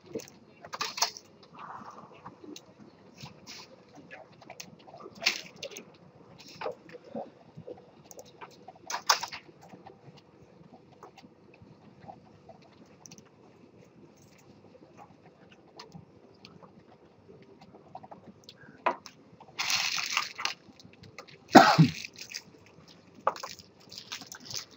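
Scattered, irregular computer mouse and keyboard clicks and knocks at a desk, with quiet gaps between them and a louder noise about two seconds before the end.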